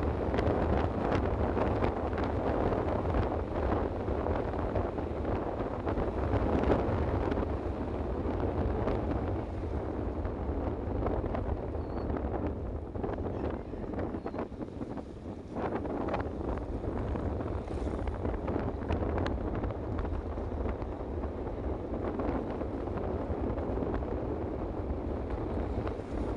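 Wind rushing over the microphone of a moving vehicle, with road and running noise underneath; it eases briefly about halfway through.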